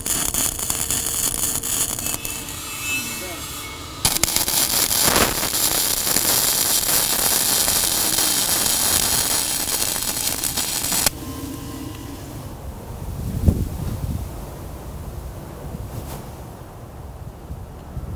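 Self-shielded flux-cored arc welding with a Lincoln Power MIG 210 MP: the arc crackles steadily as a weave bead fills a gap in the railing joint. It eases a little for a couple of seconds, picks up again about four seconds in, then stops abruptly about eleven seconds in.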